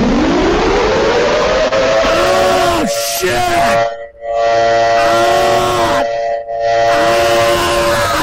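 Deliberately loud, distorted prank noise played down a phone line as a mock emergency-alert test. A siren-like tone rises in pitch and settles into harsh held tones over a loud hiss, with two brief dropouts. It is loud enough to leave the listener's ears ringing.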